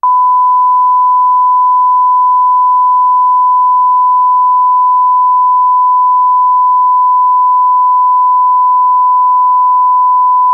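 Broadcast line-up tone: one loud, steady test tone that comes on suddenly and holds at a constant pitch and level.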